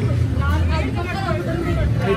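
People's voices and chatter over a steady low machine hum.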